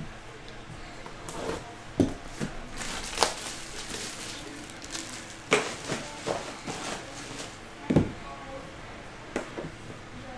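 A cardboard trading-card box being handled and opened by hand: an outer sleeve slid off and a fitted lid lifted, with a string of knocks and scrapes on the table, the loudest thump about eight seconds in.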